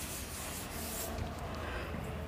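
Cloth duster rubbing across a chalkboard, wiping off chalk: a faint scratchy hiss that thins out about a second in.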